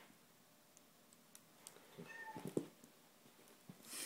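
Italian greyhound giving a brief high whine about halfway through, with a soft thump and faint rustling as it rolls on its back on the carpet.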